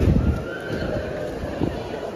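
Busy shopping-arcade ambience: a crowd of passers-by talking indistinctly, with footsteps on the paving. There are a few low thumps in the first moment.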